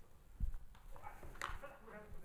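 Faint, indistinct voices in a large hall, with a dull low thump about half a second in and a softer knock near the end.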